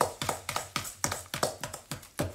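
A utensil beating softened butter and sugar in a bowl, clicking against the bowl in rapid, even taps several times a second as the butter is creamed smooth.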